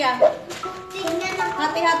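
Background music playing, with children's voices talking over it.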